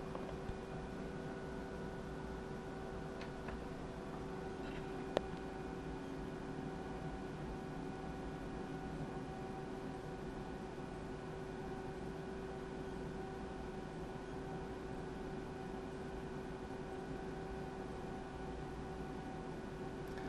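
Steady electrical hum with a constant whine from the car-audio amplifier test bench, and one sharp click about five seconds in.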